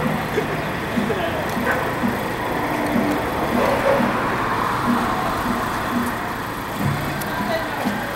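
Danjiri festival procession: crowd voices and street noise over a steady rhythmic beat of short low notes, about two a second.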